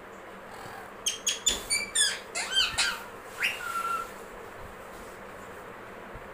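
Blue Indian ringneck parakeet giving a quick run of chirps and squawks, several gliding down in pitch, between about one and four seconds in.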